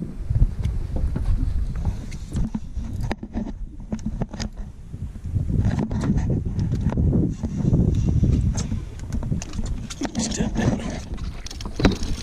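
Wind buffeting the microphone, surging up and down, with scattered light clicks and knocks.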